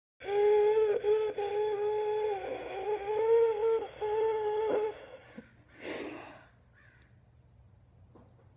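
A high voice humming a few long, steady notes, with small slides in pitch between them, for about four and a half seconds, then a short breathy exhale about a second later.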